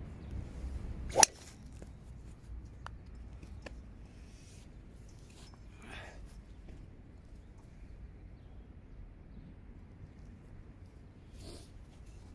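Ping G410 driver's titanium head striking a golf ball off a tee about a second in: a single sharp crack, with the ball caught by a practice net. A few faint clicks follow.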